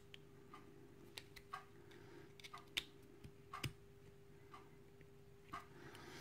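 Faint, scattered small metal clicks, about a dozen spread irregularly, as a thin blade pries at a bendable retaining clip on the end of a brass euro cylinder plug.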